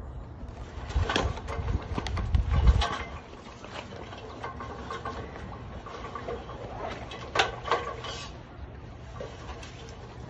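Heavy low thumps and rumble of movement for the first few seconds, then two sharp knocks close together a little after halfway, as feet come down the rungs of an aluminium extension ladder.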